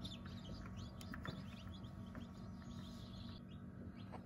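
Newly hatched chicks peeping inside an egg incubator: many short, quick, falling chirps, over a steady low hum.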